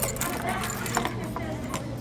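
Retractable tape measure being handled: a string of short clicks and rattles as its case is fiddled with and the steel blade is drawn out. A steady low hum runs underneath.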